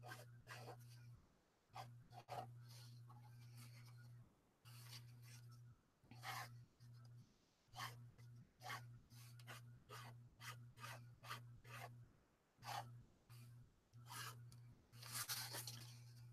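Faint scratching of a Pilot Varsity disposable fountain pen nib on watercolour paper, in many short, quick strokes as leaves and stems are doodled. Near the end, a louder rustle as the sheet is slid and turned on the desk.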